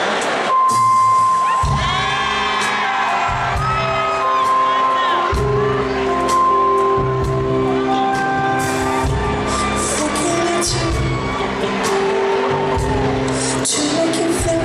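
Live band opening a slow soul ballad: held electric keyboard chords, with a bass line coming in about a second and a half in. Voices whoop and vocalize over the intro.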